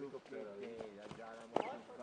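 People talking, with a few sharp thuds of a football being kicked and bouncing during a football-tennis rally; the loudest thud comes about one and a half seconds in.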